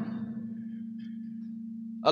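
A steady low hum on one pitch, with a few faint, brief high tones about a second in.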